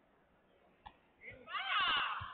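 A loud, high-pitched human shout that rises in the second half, after about a second of low background with a single faint click.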